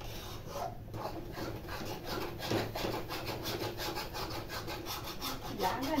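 A spatula scraping and stirring food around a metal kadhai in rapid, repeated strokes.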